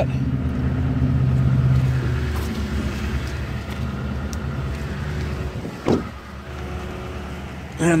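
Pickup truck's engine idling with a steady low hum, heard through the open cab door. A single thump comes a little before six seconds in, as the door is shut, and the engine is fainter after it.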